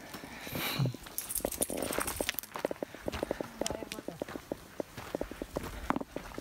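Footsteps on a dirt trail, a quick, uneven run of short steps, with a rustle of handling noise about a second in.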